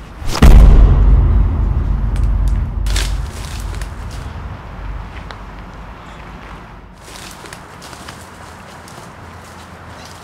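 Cinematic boom sound effect: a sudden loud hit about half a second in, whose deep rumble dies away over about four seconds, with a smaller hit about three seconds in.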